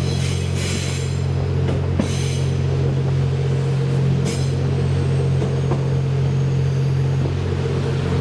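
Twilight Express Mizukaze diesel-hybrid train running, heard from its open observation deck: a steady low engine drone with wheel-on-rail noise, broken by a few brief higher-pitched rattling bursts from the wheels on the curving track.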